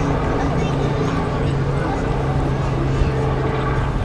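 A steady low hum runs throughout, with people talking indistinctly in the background.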